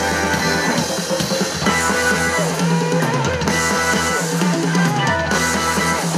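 Live rock band playing an instrumental passage: electric guitars over bass guitar and a drum kit, without vocals.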